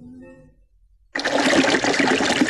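The end of a sung jingle fades to near silence, then about a second in the loud, steady rush and splash of a waterfall cuts in abruptly.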